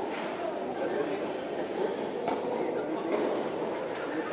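A tennis racket strikes the ball once, sharply, about halfway through, over the steady echoing din of a large indoor tennis hall with a thin high whine running underneath.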